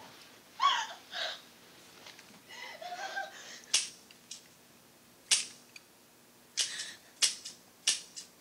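Soundtrack of a film clip played over the hall's speakers. It opens with short vocal exclamations and murmured voices, then about halfway in a series of six sharp, separate cracks, the loudest sounds.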